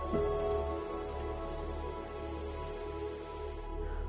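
A grasshopper stridulating: a high-pitched chirring made of a rapid, even train of pulses, which stops shortly before the end. Soft background music plays underneath.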